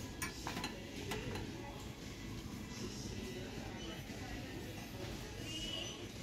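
Metal candle holder clinking about four times against a metal store shelf and glassware as it is set down, all within the first second and a half; after that, low store background.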